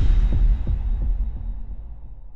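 Sound-design bass hit from a logo intro: a deep boom at the start, then a low throbbing rumble that pulses a few times and slowly fades.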